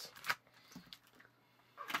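Clear plastic blister packaging being handled: a few sharp crinkles and clicks, a quiet stretch, then a louder rustle near the end.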